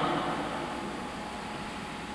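Steady hiss of background noise and room tone, with no clear event in it. A man's voice fades out right at the start.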